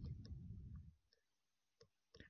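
Faint clicks and scratching from a pen stylus writing on a drawing tablet, with a faint low rumble in the first second. Otherwise near silence.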